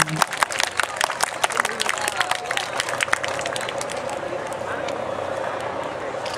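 Scattered applause from an audience: individual hand claps, densest for the first few seconds and then thinning out, over background crowd chatter.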